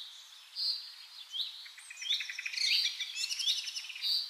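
Birds singing: short rising chirps repeated about once a second, with a dense run of quick stuttering notes in the second half.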